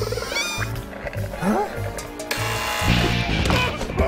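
Animated-film soundtrack: music with a regular low pulse, over which a cartoon monster's voice makes rising and falling cries with no clear words.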